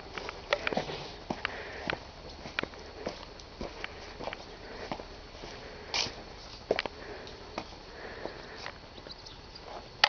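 Irregular clicks and soft knocks from a handheld camera being moved and carried while the person holding it walks, close to the microphone.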